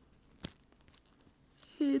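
Faint handling noise of multimeter test leads being flexed in the hands, with one sharp click about half a second in and a smaller tick a little later. A man starts speaking near the end.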